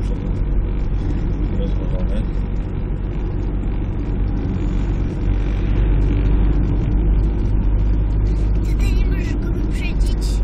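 Engine and road noise heard from inside a moving car: a steady low drone that grows a little louder about halfway through.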